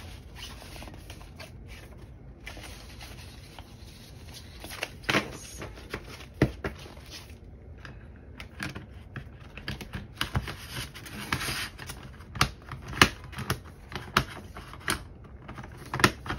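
Vellum binder pages being handled and fitted onto metal binder rings: soft paper handling with a run of sharp clicks and taps, few at first and coming thick and fast in the second half.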